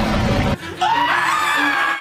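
Tense background music that drops away about half a second in, then a person's long high scream that rises in pitch and holds until it is cut off.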